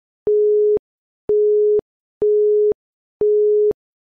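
Quiz countdown timer beeping: one steady mid-pitched electronic tone, sounding about once a second with each beep about half a second long, four beeps in all, each starting and stopping abruptly.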